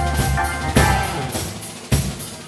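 Live band music from keyboard and drum kit: low keyboard bass notes and held chords stop about half a second in, followed by two loud drum-and-cymbal accents about a second apart that ring out.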